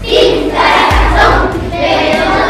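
A large group of children chanting and shouting loudly together on stage, with a low thud about a second in.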